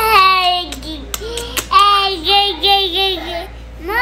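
A young child's high-pitched, sing-song vocalizing: a falling note, then a string of held, wavering notes, and a sharp rising-and-falling squeal near the end.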